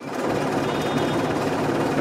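Tata bus engine running, heard from inside the driver's cab as a steady drone with a fast rattle through it.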